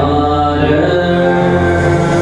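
Live band playing an instrumental stretch, electric and acoustic guitars holding steady, sustained chords.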